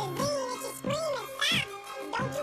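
Sped-up, chipmunk-pitched rap vocals over a hip-hop beat, with a steady bass note and drum hits a little over half a second apart.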